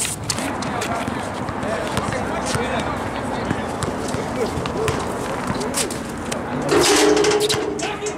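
Background voices of players chatting on an outdoor basketball court, with occasional short knocks from a basketball being dribbled. Someone calls out louder for under a second near the end.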